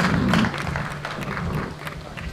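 Audience applause thinning out and fading to scattered claps.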